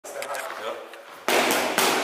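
Two boxing-glove punches smacking into focus mitts, about half a second apart, starting a little past a second in. They are the loudest sounds here.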